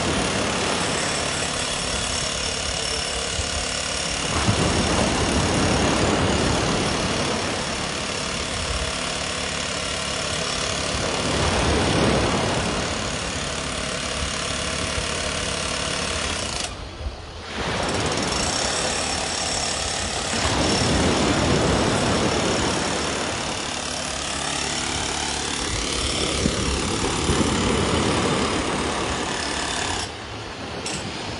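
Surf washing onto a pebble-and-sand beach, surging and easing every few seconds, over a steady motor-like hum. The sound drops out briefly about two-thirds of the way through.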